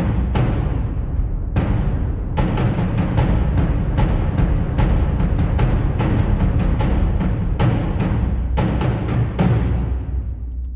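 Cinematic trailer percussion from Albion One's Darwin Percussion and Easter Island Percussion patches, played back soloed together. Heavy, reverberant drum hits come a few at a time at first, then fall into a dense, driving rhythm from about two seconds in, over a steady low rumble.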